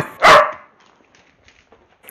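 A man's voice ends a short word in the first half second, followed by near-quiet with a few faint clicks.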